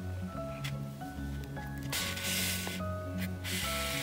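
Background music with held notes, and two brief rustles of black embroidery thread being pulled through tightly crocheted cotton, about two seconds in and again near the end.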